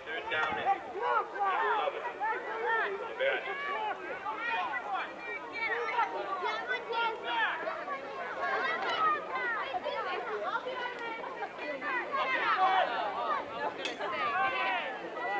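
Indistinct chatter of many overlapping voices, none of them clear enough to make out words.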